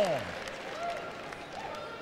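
Audience applause, a steady spread of clapping, after a man's spoken phrase falls away at the very start.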